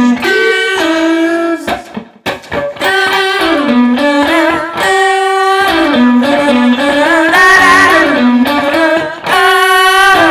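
Stratocaster-style electric guitar played through an amp: a bluesy single-note lead line of held notes stepping up and down, some of them bent and wavering. Shortly after the start the line breaks for a moment into choppy, muted picking.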